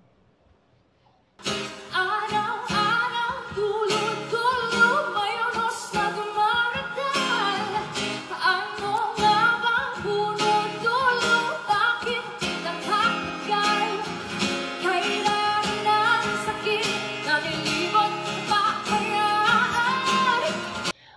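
A woman's voice singing a pop song in an acoustic arrangement, accompanied by strummed acoustic guitar. It starts about a second and a half in, after a brief silence.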